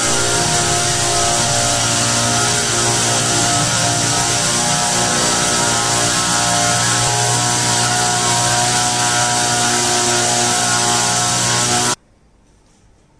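Motorized disinfectant sprayer running steadily, a constant motor and pump hum with the hiss of the spray from the hose.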